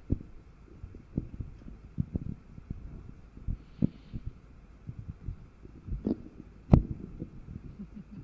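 Irregular soft low thumps and knocks, with one sharp click about two-thirds of the way through.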